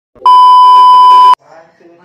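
A loud, steady, high-pitched test-tone beep, the tone that goes with TV colour bars, held for just over a second and cutting off abruptly. Faint voices follow.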